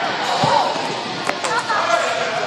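Onlookers shouting excitedly around a martial-arts sparring bout, with a single dull thud on the wooden gym floor about half a second in as a fighter goes down.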